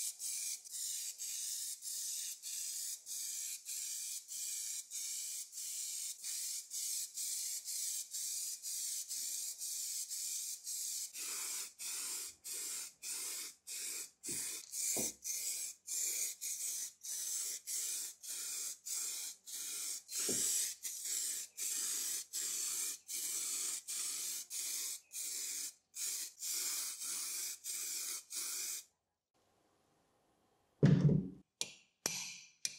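Aerosol spray cans hissing in quick pulses, about two a second, as filler primer and then teal paint are sprayed onto a lathe casting; the spraying stops abruptly near the end.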